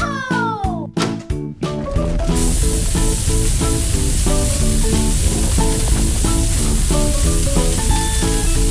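Hiss of water spraying from a fire hose, starting about two seconds in and holding steady over upbeat background music. In the first second a falling, whistle-like sound effect glides down over the music.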